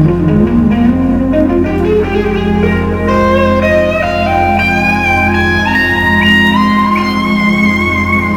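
A live band playing: an electric guitar lead climbs step by step to high held notes, wavering with vibrato near the end, over a steady low bass.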